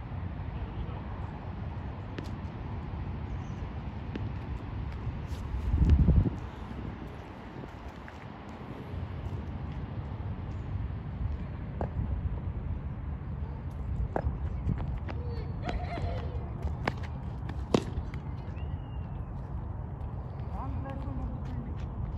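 Wind rumbling on a phone microphone, a steady low rumble with a louder surge about six seconds in, under faint distant voices and a few sharp clicks.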